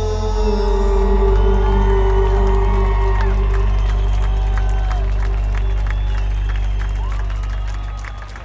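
A live band through a large outdoor PA holds a final sustained chord over deep bass as the song ends, while the crowd cheers, whoops and claps over it. The music fades away near the end, leaving the cheering and clapping.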